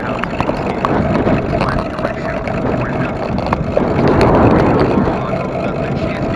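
Wind rushing over the microphone and tyre rumble from an electric bike riding on a paved path, with a faint steady hum and scattered light rattles.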